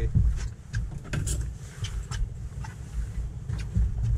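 Steady low rumble of wind and water on a small boat out on the water, with scattered light clicks and knocks.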